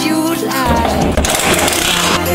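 Background music with a steady bass line, opening on a held vocal note that slides and fades in the first half second. A hissing, rattling noise rises in the upper range over the last half second or so.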